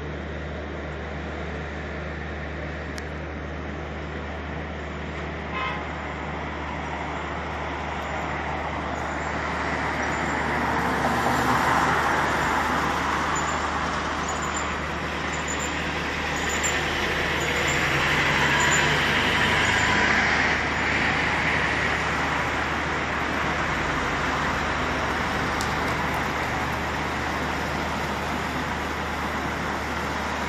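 Road traffic noise from the street, a steady wash of passing cars that swells louder twice, around eleven and nineteen seconds in.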